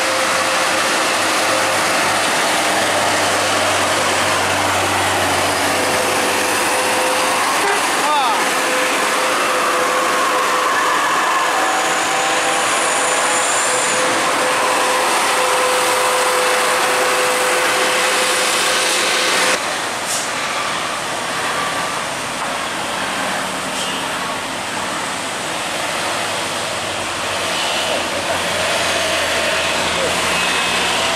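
Heavy diesel buses and a tanker truck climbing a steep uphill grade past close by, engines running under load, with people talking in the background. The sound changes abruptly about two-thirds of the way through.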